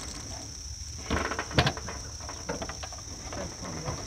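Steady high-pitched drone of an insect chorus, crickets, over quiet outdoor background, with a short rustle and a sharp click about a second and a half in.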